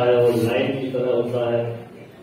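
A man's voice speaking into a microphone in slow, drawn-out, chant-like phrases, breaking off near the end. There is only speech.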